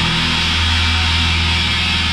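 Thrash metal recording: heavily distorted electric guitars and bass playing a dense, steady passage.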